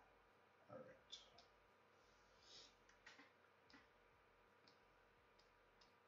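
Near silence with a few faint, scattered clicks from the drawing desk: a cluster in the first few seconds, then smaller, lighter ticks near the end.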